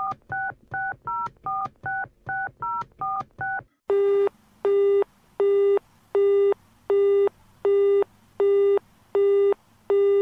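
A telephone number being dialled on a touch-tone keypad, a quick run of key beeps, followed after a brief pause by the engaged tone: a single low beep repeating on and off about every three-quarters of a second, meaning the line is busy.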